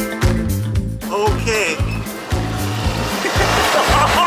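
Background music with a steady, repeating bass beat; a voice, laughing or speaking, is heard briefly about a second in.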